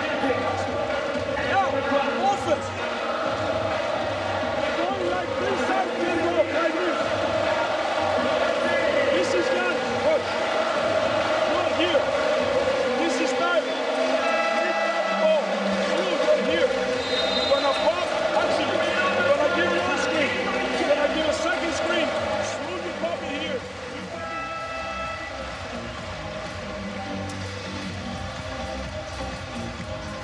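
Arena music playing over the PA with a crowd of many voices over it. It gets quieter about three-quarters of the way through.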